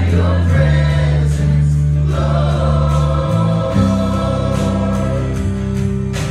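Gospel-style worship music: singers with a band, holding long sung notes over sustained low bass notes that shift to new chords about half a second in and again past the middle.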